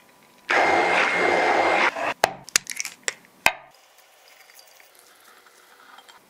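A blender motor runs steadily for about a second and a half, then stops. It is followed by a quick run of sharp clicks and knocks, the loudest at the start and end of the run.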